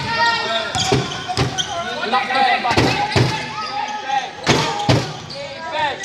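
Basketball being dribbled on an indoor court: a series of thuds at an uneven pace, about half a dozen in all, with voices calling out over them.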